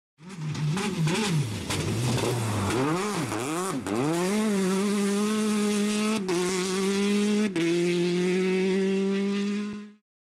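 Race car engine revving up and down several times, then holding high revs with two brief cuts where the pitch steps, as at gear shifts, before fading out at the end.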